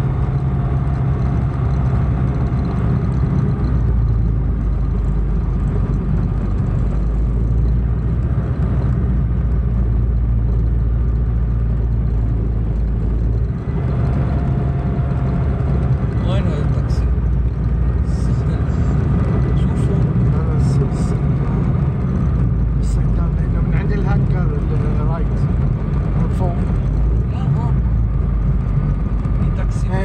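Light aircraft's engine running steadily at low power, heard as a loud, even drone inside the cockpit while the aircraft taxis after landing. Scattered short clicks come in the second half.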